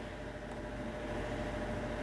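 Steady faint hiss with a thin, even hum running through it, room tone with no distinct sounds standing out.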